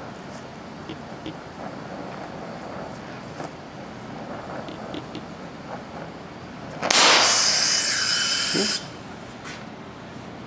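Oxy-acetylene welding torch burning quietly, with faint crackles, as pure cast iron rod is melted into a cast iron intake manifold. About seven seconds in, a sudden loud hiss with a high whistle runs for about two seconds and cuts off sharply: the tip was stuck down inside the casting and the flame popped off.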